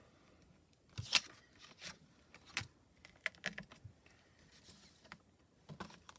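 Hands handling paper and stamping supplies: a few scattered light clicks and taps, the sharpest about a second in.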